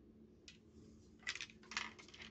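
Handling noise from a Colt SP-1 AR-15 rifle being moved in the hands: a few short, light metallic clicks and rustles.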